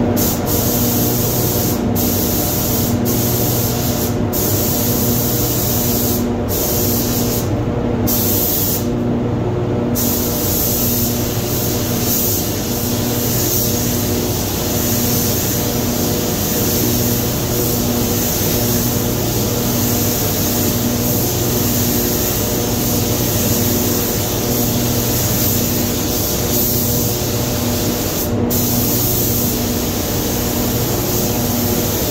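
Gravity-feed compressed-air spray gun hissing as it sprays clear coat onto a car's side panels. In the first ten seconds the trigger is released several times in short pauses between passes, then the spray runs almost without a break, with one short pause near the end. A steady machine drone sits underneath.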